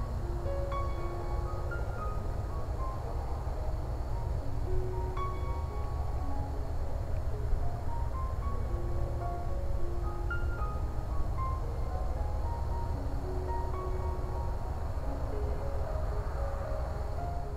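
Background music: a slow melody of short, separate notes over a steady low rumble.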